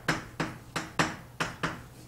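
Chalk writing on a chalkboard: a quick series of short taps and scratches, about six strokes in two seconds, as characters are written stroke by stroke.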